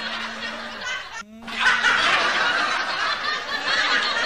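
Continuous laughter, high-pitched and tittering, over a steady low hum, breaking off briefly about a second in before resuming.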